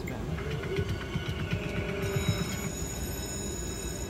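Alien video slot machine's electronic spin sounds while the reels turn: high ringing electronic tones, which become a set of steady high tones from about two seconds in, over the low hubbub of a casino floor.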